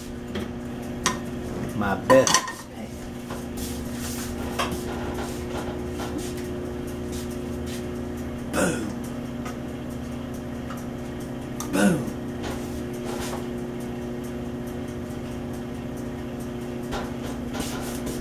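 Stone-coated non-stick frying pan and a metal utensil clinking and scraping on the stove as butter goes in and is pushed around the pan, a few separate clatters over a steady low hum.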